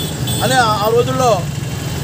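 A man's voice speaking one short phrase, over a steady low hum of an idling engine.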